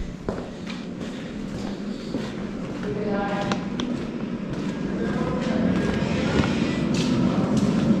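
Indistinct voices of people talking, growing steadily louder, with footsteps on a concrete corridor floor.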